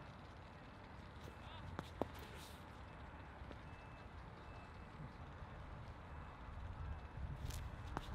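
Quiet outdoor background noise with two brief sharp clicks about two seconds in.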